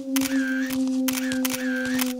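Cartoon camera shutter sound effect repeating about twice a second, each click carrying a short chirp, over a low steady droning note.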